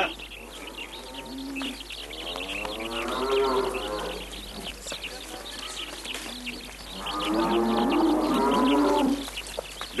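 Cattle mooing: two long moos, the first beginning about two seconds in and the second near the end, over short high chirps in the background.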